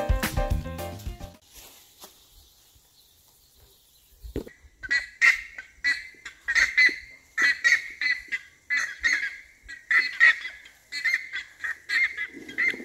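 Background music fades out in the first second or so. After a quiet stretch, a flock of buff-necked ibises (curicacas) flying overhead call loudly and repeatedly, about five seconds in and on through the rest.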